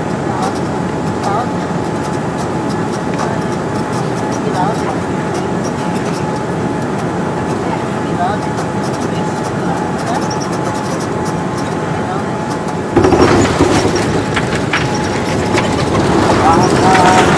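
Jet airliner cabin noise on final approach: a steady rush of engines and airflow. About thirteen seconds in it steps up suddenly into a louder rumble as the aircraft touches down and rolls on the runway.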